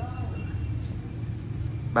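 A steady low background rumble, with a faint voice briefly at the start.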